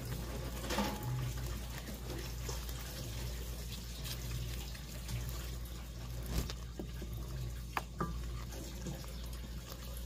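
Wooden spoon stirring a thick Alfredo sauce of melting parmesan in a pan, a steady wet stirring with a few sharp clicks of the spoon on the pan in the second half.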